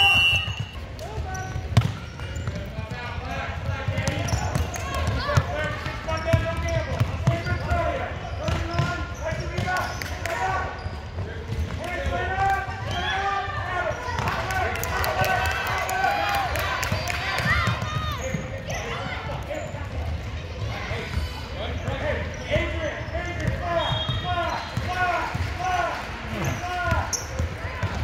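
A basketball being dribbled and bouncing on a hardwood gym floor during play, with repeated short knocks, under many voices of players and spectators talking and calling out.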